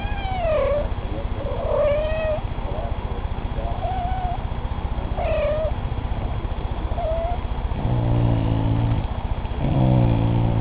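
Kittens give about half a dozen short, high meows, then the dog gives two low, drawn-out growls near the end. The growl is a moose-like grumble, easy to mistake for a rumbling stomach, and is his warning to the kittens when they annoy him.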